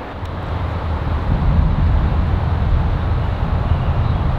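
Wind buffeting the microphone: a steady, deep rumble of noise with no distinct events.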